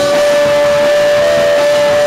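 Live punk band playing loud, with electric guitar and saxophone, and one long note held steady over the band throughout.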